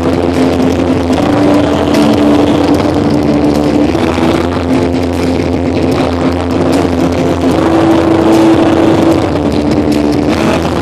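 Rock band playing live through a venue PA, loud and muddy: electric guitar, keyboards and bass, with sustained notes held over a heavy low end.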